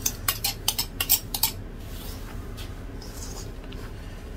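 A utensil clinking rapidly against a bowl as beaten eggs are scraped out into the flour, about ten sharp clinks in the first second and a half. After that comes only faint rustling as hands work the egg into the flour.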